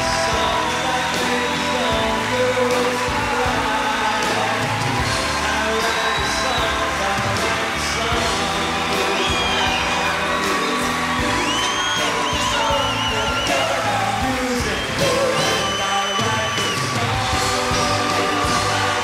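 Live pop band playing with the audience cheering and whooping over it; several long high whistles come in the second half, one of them warbling.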